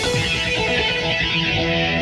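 Rock music led by an electric guitar played on a double-neck guitar, with the band behind it.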